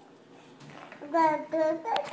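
A baby's high-pitched warbling gobble, imitating a turkey: two short calls about a second in, the first with a quavering trill.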